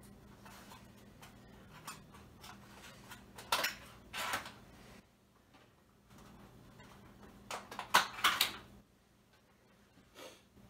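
Dishes, a foil food tray and utensils clattering and knocking in two short bursts, about three and a half seconds in and again around eight seconds in, the second the louder, over a faint steady low hum.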